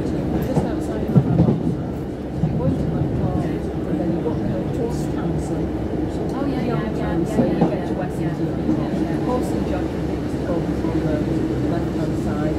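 Cabin noise of a British Rail Class 150 Sprinter diesel multiple unit under way: a steady rumble from the underfloor diesel engine and the wheels running on the rails.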